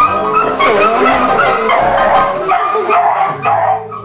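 A dog barking and howling over harmonica playing.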